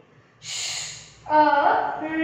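A woman's voice making a drawn-out, breathy 'shhh' sound, the phonics sound of the 'sh' digraph. She speaks a word from about a second and a quarter in.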